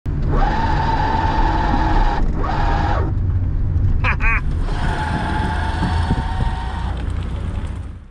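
Cabin noise of the City Transformer CT-1 electric micro car on the move: a low road rumble with a steady whine that cuts out for a couple of seconds and comes back. A short laugh about four seconds in, and the sound fades out at the very end.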